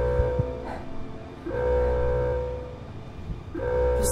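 Facility alarm horn sounding in long steady blasts, each about a second and a half, recurring roughly every two seconds over a low rumble: the lab's emergency lockdown alarm.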